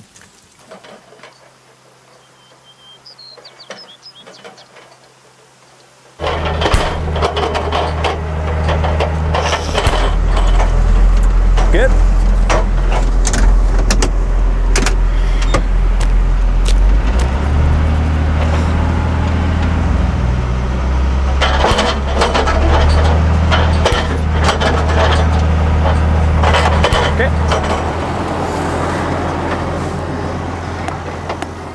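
Quiet outdoor ambience for about six seconds, then abruptly a tractor engine running loudly with a tractor-mounted hydraulic post driver pounding wooden fence posts: repeated sharp knocks over the steady engine drone, whose note shifts a few times.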